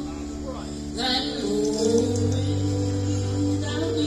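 Live bluegrass band playing a sad love song: acoustic guitar, mandolin and autoharp under a sung vocal line that enters about a second in.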